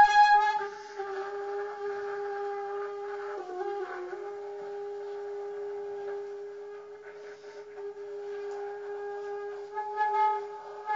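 Alto saxophone: a few quick repeated notes, then one long held note that wavers and dips briefly about halfway through before settling again.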